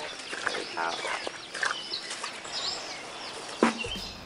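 Birds chirping and calling repeatedly, with a few brief spoken words in the first couple of seconds.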